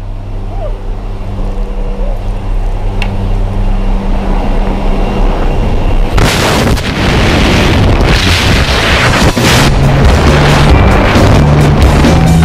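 A steady low drone in the open door of the jump plane, then wind rushing and buffeting over the microphone from about six seconds in, as the tandem pair leaves the aircraft and drops into freefall. Background music plays underneath.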